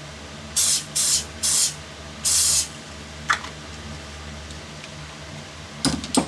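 Four short hissing sprays from a pump bottle of CA glue accelerator, misting the freshly laid cyanoacrylate fill so that it hardens at once. The last spray is the longest, and a fan hums steadily underneath.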